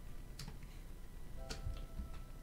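Two sharp clicks about a second apart at the computer desk, from the artist's input device as he works the canvas, over faint background music.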